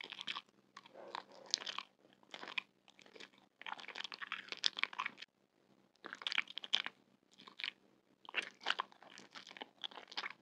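Close-miked crunching and chewing of crunchy food bitten off a stick, in separate bursts of crisp crunches with short pauses between them.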